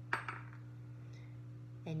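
A metal spoon hanging from a string, tapped gently once against a tabletop: a single short clink with a brief ring, the strike for the 'spoon bell' sound demonstration.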